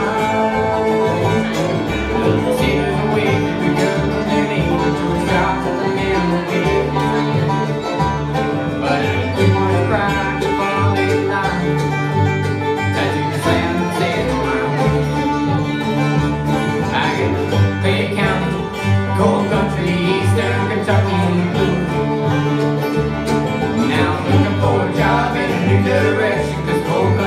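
Live acoustic bluegrass band playing an instrumental break, with no singing: banjo, fiddle, resonator guitar, mandolin and acoustic guitar over an upright bass.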